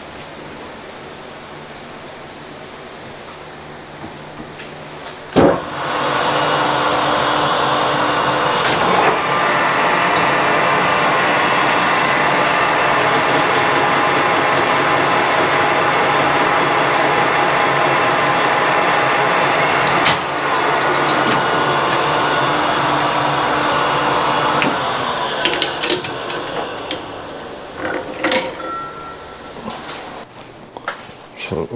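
Metal lathe starting with a clunk about five seconds in and then running steadily with a gear whine for about twenty seconds while it turns metal off a crankshaft counterweight to bring it into balance. The lathe winds down near the end, followed by scattered metal clanks.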